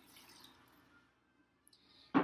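Faint trickle of starter tea being poured from a glass jug into a glass jar, tapering off after about a second into near silence.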